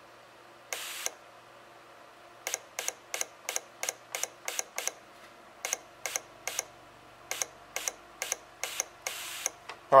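Fuel injector on a bench tester, its solenoid pulsed by a momentary push button. It clicks in quick runs of about four a second, with a short hiss of spray from the nozzle once near the start and once near the end.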